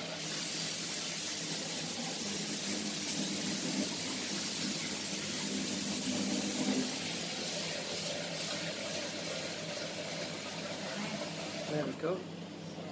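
Kitchen tap running steadily into a steel pot in the sink, cutting off right at the end.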